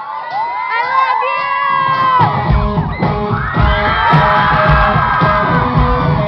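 A concert crowd is screaming and cheering. About two and a half seconds in, a live pop-punk band starts the next song with loud, driving rhythmic drums and amplified instruments, and the crowd keeps cheering over it.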